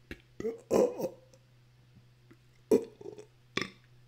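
A man burping, the loudest and longest burp about a second in with a falling pitch, with a few short mouth sounds after it.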